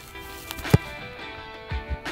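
Background music, with one sharp thud of a football being punted a little under a second in.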